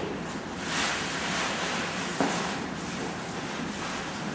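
Fabric carry bag rustling and sliding as it is pulled off a folded travel cot, with a single sharp knock a little past two seconds in.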